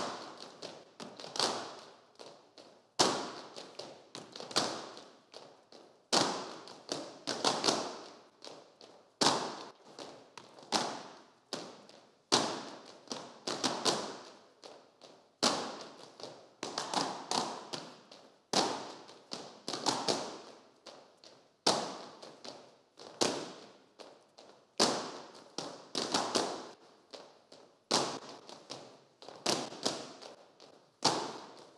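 Footwork of a line of dancers in tall leather Cretan boots on a stage floor, with no music: a loud strike about every three seconds and several lighter steps between, in a steady rhythm.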